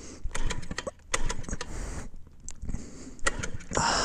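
Stalled GY6 150cc scooter engine being cranked over in short bursts without catching, a fault the owner traces to the carburetor.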